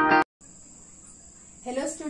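Intro music with a regular beat cuts off abruptly just after the start. A steady, faint high-pitched whine follows over room tone, and a voice begins speaking near the end.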